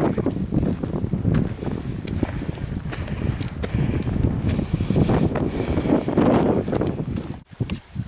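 Wind buffeting the camera microphone: an uneven low rumbling rush that swells and fades, with a brief dropout near the end.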